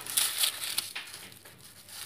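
A sugar-coated fried doughnut being torn apart by hand: a soft crackle and rustle of sugar and crust, strongest in the first second, then fading.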